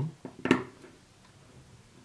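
A plastic dropper tip pressed into the neck of a small plastic e-liquid bottle, seating with a single sharp snap about half a second in.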